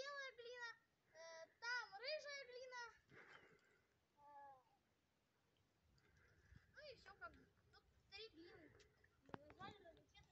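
Faint, high-pitched children's voices calling out and talking through the first three seconds. A short quiet gap follows, then someone starts speaking again near the end, with a couple of small clicks.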